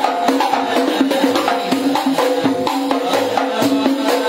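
Hadrah ensemble of hand-beaten frame drums (rebana) playing a fast, dense interlocking rhythm, with a lead voice chanting the melody through a microphone.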